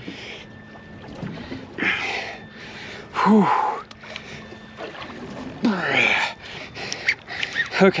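A man's effortful grunts and heavy breaths, three of them with the loudest about three seconds in, as he strains against a hooked shark on a heavy rod and reel.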